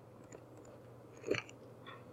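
Quiet room with a few faint, short computer-mouse clicks as digits and a divide sign are keyed into an on-screen calculator, and one louder short click-like sound about a second and a third in.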